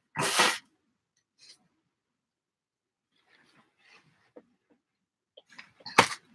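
A single short sneeze about half a second long, right at the start, then faint scattered handling noises.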